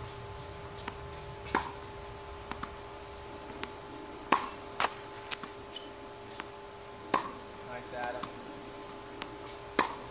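Tennis ball struck by a racket on forehand groundstrokes: a sharp pop every two to three seconds, four or five in all, with softer knocks between them.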